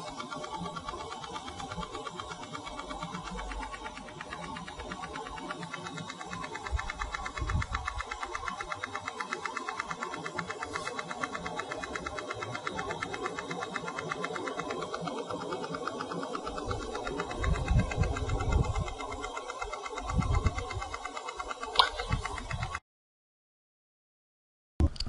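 PEMF therapy loop wrapped around a horse's leg joint, pulsing with a rapid, even ticking buzz. A deeper sound from the loop is taken as a sign that the joint is absorbing more energy. Low bumps from handling come and go, and the sound cuts out shortly before the end.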